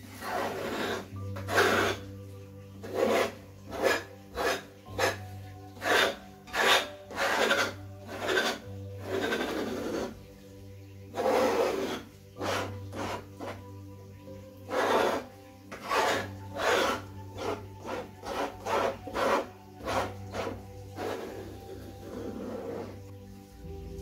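Palette knife scraping and spreading wet acrylic paint across a stretched canvas in repeated strokes, roughly one a second, with a couple of short pauses.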